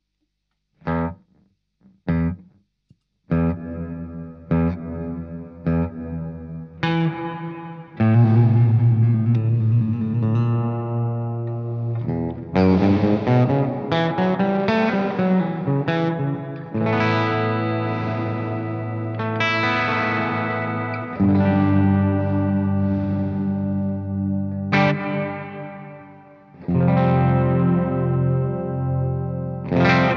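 Electric guitar played through the Walrus Audio Fathom reverb pedal on its plate setting. It opens with a few short chord stabs, then settles into ringing chords and notes that bend up and down in pitch, each trailing off in a long reverb wash.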